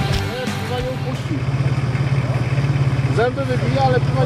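Off-road 4x4 engine idling with a steady low pulse, voices calling out over it about a second in and again near the end. Background music cuts off right at the start.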